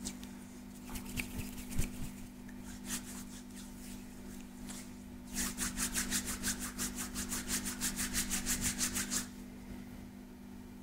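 Hands rubbing and stroking the bare skin of a back close to the microphone: a few scattered strokes, then about halfway through a quick run of rapid back-and-forth rubbing, about eight strokes a second, lasting nearly four seconds.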